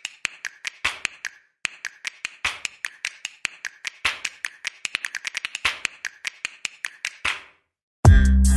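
A rapid, irregular series of sharp clicks and taps, several a second, with a brief break about one and a half seconds in. They stop shortly before the end.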